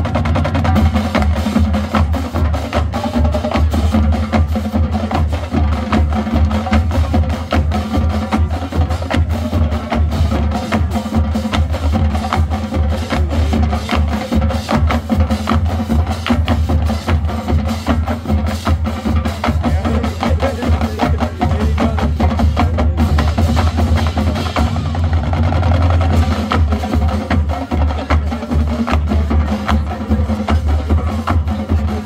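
College marching band playing, with its drumline keeping a busy, steady beat over the low brass.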